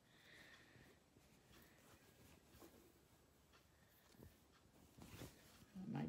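Near silence, with faint soft rustles of muslin fabric being handled and folded.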